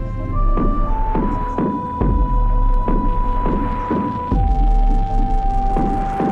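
Electronic pop played live on synthesizers, starting abruptly: a deep sustained bass drone under a steady beat of about three hits every two seconds, with a held synth lead note that steps between pitches and drops lower about four seconds in.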